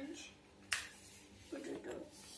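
Hands pressing a fold into a sheet of paper, with one sharp click a little under a second in. Faint voices in the background.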